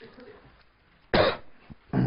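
A man coughing twice: a short sharp cough just past halfway and a second, voiced one with a falling pitch at the end.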